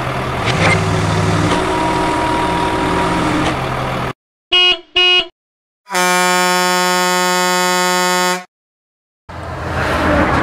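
Truck engine sound running for a few seconds and then cutting out, followed by a truck horn: two short toots about half a second apart, then one long blast of about two and a half seconds. After a brief silence the engine sound comes back near the end.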